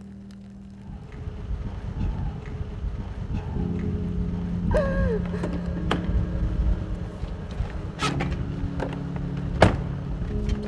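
A low, steady rumble as someone gets into a car, with a few sharp knocks and a thunk near the end, the loudest about nine and a half seconds in. A steady low hum runs under it from about three and a half seconds, and a short falling tone comes near five seconds.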